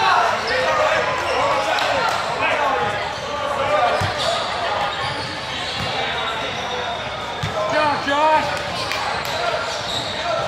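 Voices of players and spectators echoing in a large gym hall, with a basketball bouncing a few times on the hardwood floor.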